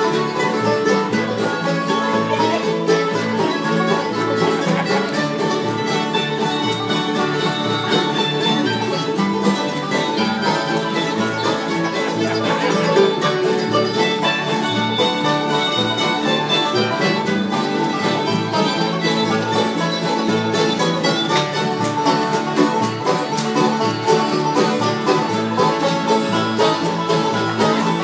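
String-band music with a plucked banjo prominent over guitar and a bowed string, in an old-time or bluegrass style, playing continuously with a steady beat.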